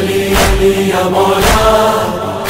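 Noha recitation: a held, chanted vocal note over a steady drone, with a heavy percussive hit about once a second.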